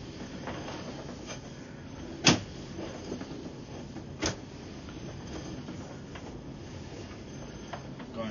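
Low steady background noise with two sharp knocks about two seconds apart, while a sewer inspection camera's push cable is pulled back out of the pipe.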